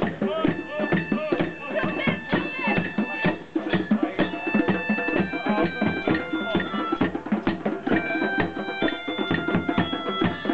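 Hand drums and other percussion played together in a fast, busy rhythm. High held notes ring out over the drumming, mostly in the second half.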